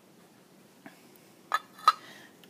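Welded steel bracket set down on a concrete floor: two short ringing metal clinks about a third of a second apart near the end, the second louder.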